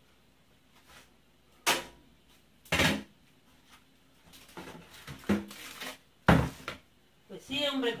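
Cookware clattering on a stovetop: two sharp clanks about a second apart, then a louder one a few seconds later, as pots, lids and utensils are handled and set down.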